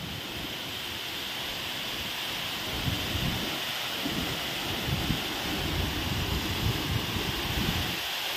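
Khambeswari waterfall, a tall cascade pouring down a rock face into a pool, rushing steadily. From about three seconds in, low gusty buffeting on the microphone joins it.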